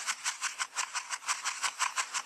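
Dry sand and gravel rattling in a plastic gold pan, shaken in quick regular bumps about five or six times a second as the pan is knocked against the hand. This is dry panning: the bumping settles the heavy material and gold to the bottom while the light dirt works out over the rim.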